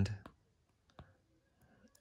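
A few faint, sharp clicks of a stylus tip tapping on a Microsoft Surface Pro's glass touchscreen, the clearest about halfway through.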